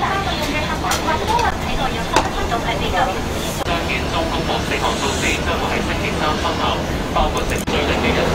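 Ambience of a small noodle shop open onto the street: several voices talking in the background over a steady low traffic hum, with a few sharp clicks and knocks.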